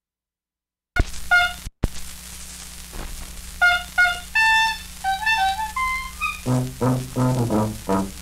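Stylus set down on a spinning 78 rpm shellac record with a sharp click about a second in, then surface noise under the record's brass-led dance-band introduction. A single brass melody line plays first, and the full band with a low bass comes in near the end in a steady rhythm.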